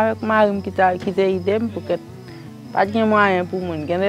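A woman's voice with a faint, steady high buzz behind it.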